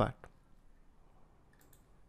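A few faint computer mouse clicks against low room noise.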